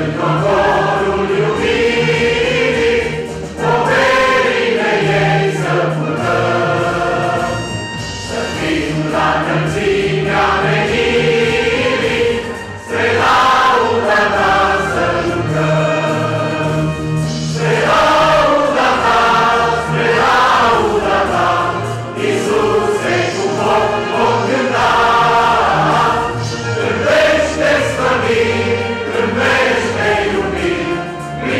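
Mixed choir of men's and women's voices singing a Christian hymn in several parts, with short breaths between phrases.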